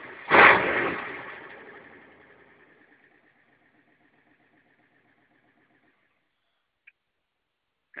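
An engine firing up, catching with a loud burst about half a second in, then dying away over the next few seconds. A faint steady running note lingers until about six seconds in.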